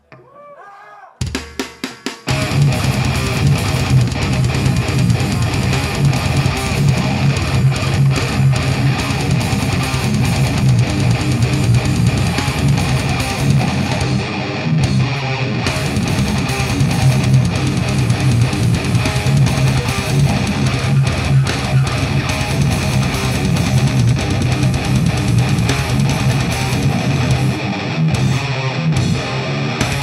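Live metal band at full volume: distorted electric guitars over fast drum-kit playing, starting together about two seconds in after a few short drum hits.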